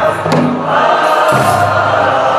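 Choir singing an Eritrean Orthodox Tewahedo mezmur (spiritual song) in sustained, held notes, with a low part that changes pitch about once a second.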